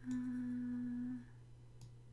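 A single steady pitched tone lasting about a second, followed by a faint click near the end.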